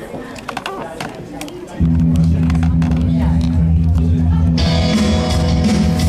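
Live band starting a song: a loud, steady low note cuts in suddenly about two seconds in, and guitar and drums join about halfway through.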